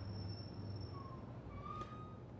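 Quiet room tone: a steady low hum with a faint, thin high-pitched whine, and a few faint short tones and a soft click in the second half.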